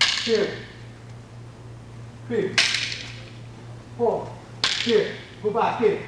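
Fighting sticks striking in a drill: three sharp cracks with a ringing tail, at the start, about two and a half seconds in and near five seconds in. Short falling shouts from the fighters come with the strikes.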